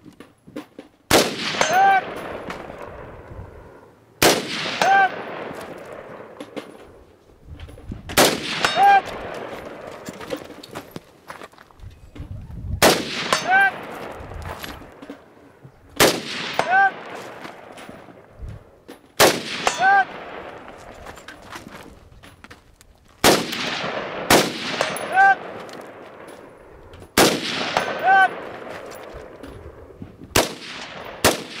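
A Vietnam-era AR-15 fires single aimed shots, eight in all, about one every three to four seconds. Each shot is followed under a second later by the ring of a steel target being hit 100 to 140 yards out.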